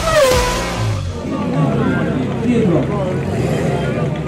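Rock intro music ends with a falling tone in the first second. It gives way to people talking over the steady idle of a Ferrari 512 TR's flat-12 engine.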